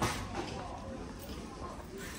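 Quiet ambience of a large shop: faint background voices and footsteps on a hard floor, with one short knock at the very start.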